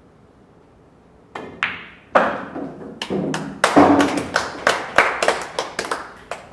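A quick, irregular run of about a dozen hard clacks and knocks of pool balls striking one another, starting about a second and a half in and ending with the window, each with a short ring.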